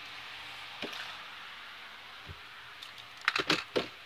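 Handling noise from the camera being picked up and moved: a faint click, a soft thump, then a quick cluster of sharp clicks and knocks near the end, over a steady hiss.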